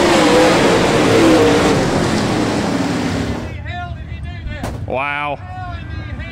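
Super late model dirt-track race cars' V8 engines running hard at speed past the finish line, a loud, dense noise with a wavering engine note. It cuts off suddenly about three and a half seconds in, giving way to raised voices.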